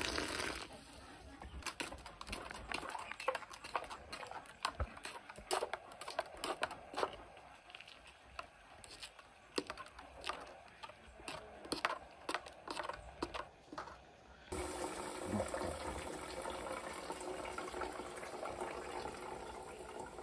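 Water poured into a metal pot, then light clinks and knocks of pots and utensils being handled. About three-quarters of the way through, a steady pouring of liquid begins.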